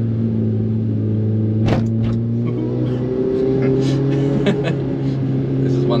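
Cabin sound of a VW Caddy van fitted with an Audi S3 turbocharged 2.0 TFSI four-cylinder engine, pulling at low road speed. The engine note steps up in pitch about three seconds in as the revs climb.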